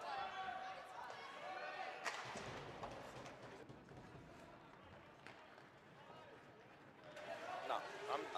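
Faint ice-hockey rink sound: skates scraping on the ice and a few sharp knocks of sticks and puck, with faint, indistinct voices in the first couple of seconds and again near the end.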